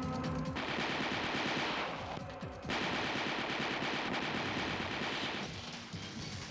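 Rapid automatic gunfire from an action-film soundtrack, in two long stretches with a brief lull about two seconds in.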